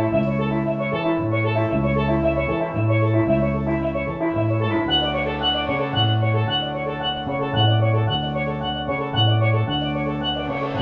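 Live steel-pan jazz-fusion band playing: a steelpan carries the melody in quick ringing notes over a moving bass line and a drum kit played with mallets.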